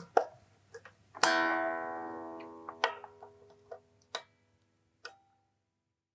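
Stratocaster electric guitar strings strummed once about a second in, the chord ringing and slowly fading, with a few sharp clicks of screwdriver or hardware handling before and after it.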